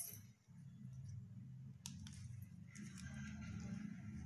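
Faint clicks and light scraping of a metal fork against a plastic dessert cup of chocolate cream, with one sharp click about two seconds in, over a low steady hum.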